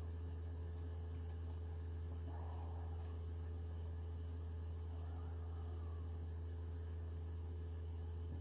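Steady low electrical hum, with a few faint soft scuffs of hands handling the printer's build plate knob.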